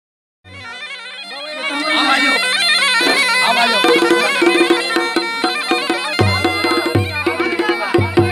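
Mashakbeen (Garhwali bagpipe) playing a wavering, ornamented folk melody over a steady drone, starting about half a second in. From about four seconds a quick drum rhythm joins, with deep dhol strokes from about six seconds.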